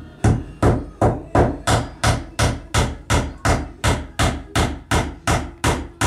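A paintbrush dabbed hard and fast against a wooden beam, working preservative into the wood: a steady run of sharp knocks, about three a second.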